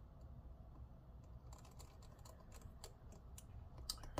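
Faint, quick clicking and ticking of a precision screwdriver driving a tiny screw into a laptop's metal connector bracket, starting about a second and a half in.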